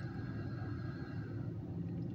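Low, steady vehicle rumble with a faint hum, heard inside a stationary car's cabin.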